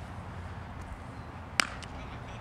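A single sharp crack of a baseball impact about one and a half seconds in, over a steady outdoor hiss of wind and field ambience.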